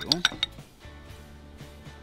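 A metal spoon clinking quickly several times against a glass bowl as sauce is scooped out, over in about half a second, followed by soft background music.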